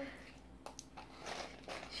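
Faint clicks and rustling from a clear plastic Tic Tac box of mini boxes being handled and its lid worked open, a few separate small clicks scattered through.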